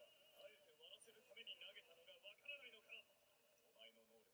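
Near silence, with a faint voice talking in short phrases, heard from a distance: anime dialogue leaking quietly into the recording.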